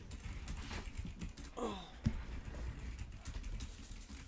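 Typing on a computer keyboard: an irregular run of light key clicks.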